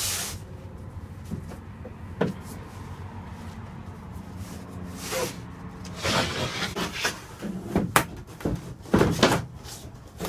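Thin wooden boards being handled and laid on a van floor: scattered knocks as panels are set down, with a stretch of scraping as a sheet is slid into place.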